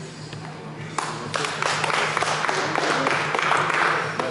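A small crowd of onlookers bursts into clapping about a second in, with voices mixed in, greeting the end of a mas-wrestling stick-pull bout.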